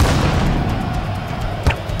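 Cartoon sound effect of a football booted hard: a sudden boom as the ball is struck, then a rushing whoosh as it flies, and a sharp thud near the end, over background music.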